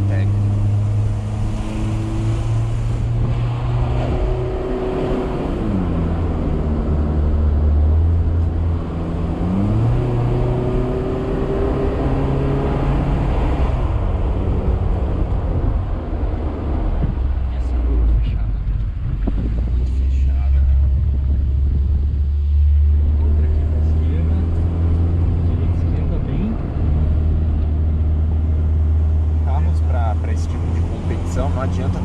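A small car's engine heard from inside the cabin, driving at low speed. Its pitch drops about five seconds in, climbs again around ten seconds and drops near fourteen seconds as the gears and throttle change. Midway the engine note is partly covered by road and tyre noise before it settles steady again.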